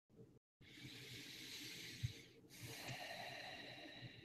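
Slow, deep breathing of a person meditating close to a microphone: two long breaths with a short break between them. There is a single faint click about two seconds in.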